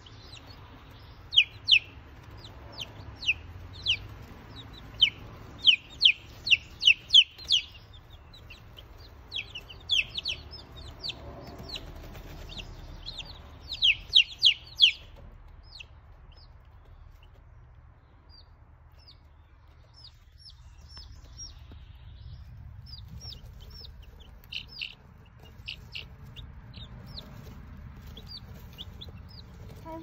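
A brood of baby chicks peeping: many short, high, falling peeps in quick clusters, busiest in the first half and sparser and quieter after about fifteen seconds, over a low steady rumble.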